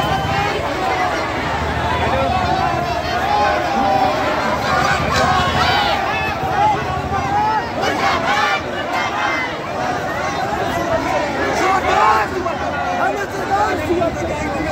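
Large crowd of marching protesters: many voices talking and calling out at once in a dense, continuous hubbub.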